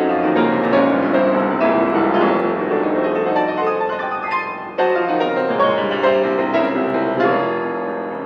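Solo piano playing classical music, with fast, dense passagework and strongly struck chords, one near the start and another about five seconds in.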